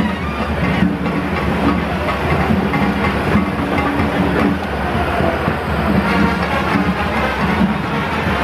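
A parade float passing close by: a loud, steady mechanical rumble with music mixed in.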